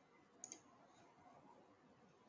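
Faint computer mouse clicks, two in quick succession about half a second in, over near silence.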